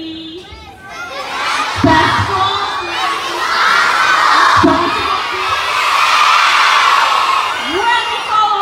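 A large crowd of elementary-school children cheering and shouting together. The noise swells about a second in and stays loud to the end.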